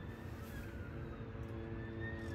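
A siren wailing faintly, its pitch rising slowly and then sliding down, heard inside a car cabin over a low road rumble.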